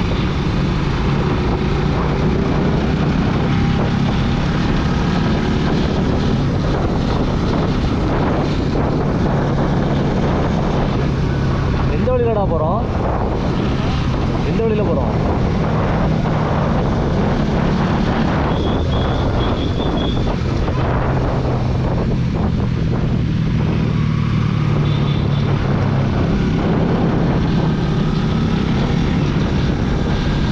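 Bajaj Pulsar NS200's single-cylinder engine running under way, with wind buffeting the microphone. A brief rising and falling tone comes about twelve seconds in.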